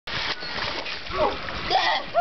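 Pool water splashing with a steady rush, with short excited voices calling out twice over it.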